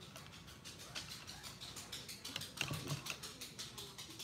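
Paintbrush handles clattering against each other and a plastic cup as a hand rummages through the cup and pulls out a brush: a quick, irregular run of light clicks and rattles, busiest a couple of seconds in.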